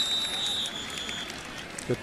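Referee's whistle blown once, a shrill steady tone lasting about a second, over the steady noise of a stadium crowd.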